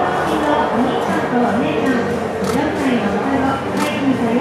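Onlookers' voices chattering, with a few sharp camera shutter clicks.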